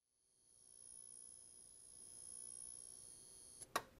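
Faint outro sound effect: a very high, steady tone that cuts off suddenly, followed by one short sharp hit near the end.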